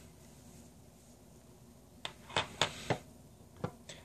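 A few light clicks and taps as a disassembled revolver frame and hand tools are handled: about five short clicks in the second half.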